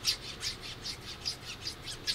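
Clone DriveTech RC crawler shock, not yet filled with oil, being stroked in and out by hand: its piston rasps along the inside of the shock body in quick, squeaky scrapes, about five a second. The rasp is the sign of machining grooves left on the inside of the body.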